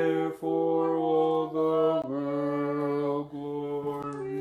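A man chanting a slow Orthodox liturgical melody in long held notes with no clear words. He steps down to a lower held note about halfway through.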